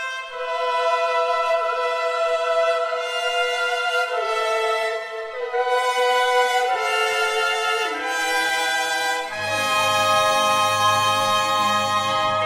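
Symphony orchestra playing an instrumental passage: high strings hold long sustained notes that step downward. Lower instruments, brass among them, come in about nine seconds in.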